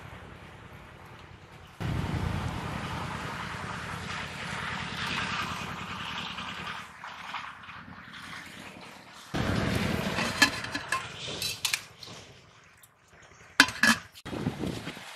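Rustling and handling noise in grass as a crab is grabbed by hand, in two louder stretches. A few sharp metallic clinks, as of an aluminium pot and lid, come late on, the loudest near the end.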